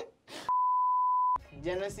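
Censor bleep: a single steady 1 kHz tone lasting just under a second, inserted over muted audio to blank out a word.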